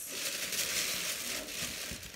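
Tissue paper crinkling and rustling as shoes are packed back into a cardboard box, a continuous papery rustle that eases off toward the end.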